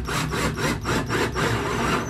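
Cordless drill boring into a raw cedar board, the bit grinding through the wood with a thin high motor whine coming and going.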